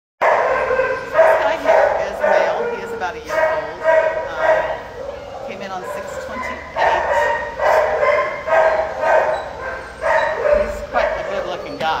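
Dogs barking over and over in a shelter kennel, short sharp barks in quick runs with a few brief pauses.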